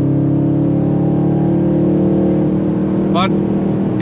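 Tuned Audi RS7 C8's 4.0-litre twin-turbo V8 with a Milltek exhaust, heard from inside the cabin, pulling hard in sixth gear at around 180 to 200 km/h, its note rising slowly. A little past halfway the steady note turns rougher as the throttle comes off.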